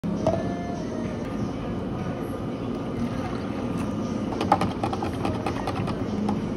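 Steady hum of cafe refrigeration equipment. About four seconds in comes a quick run of light clicks and clinks as a plastic drink cup with ice is handled and set down on the counter.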